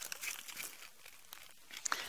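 Faint rustling and crackling with scattered small clicks, and a slightly louder crackle near the end.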